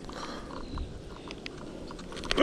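A scattering of small, sharp clicks and ticks as a hook is worked free from a small largemouth bass's mouth by hand, over a low steady background rumble.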